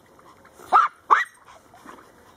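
A dog barking twice in quick succession, two short, sharp yips a little under half a second apart.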